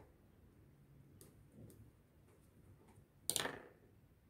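Faint handling of soft sugar paste, with a small click about a second in. About three seconds in, the plastic modelling tool is set down on the cutting mat with one brief, sharp knock, the loudest sound here.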